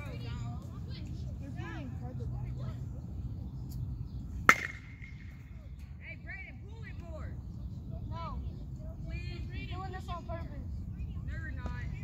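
A single sharp ping of a metal baseball bat hitting a pitched ball, about four and a half seconds in, with a short ring after it.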